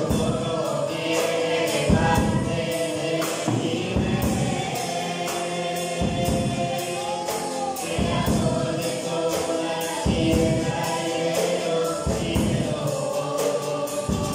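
Voices singing a gospel hymn over an acoustic guitar strummed in a steady rhythm.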